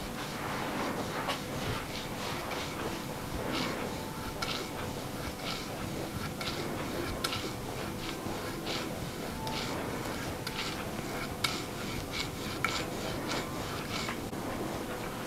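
Brass gua sha scraper stroking firmly over oiled skin during a buttock massage: repeated short scraping strokes, about one or two a second, with a couple of sharper clicks near the end.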